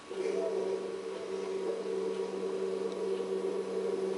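A steady hum of a few low pitches held together, which comes in suddenly at the start.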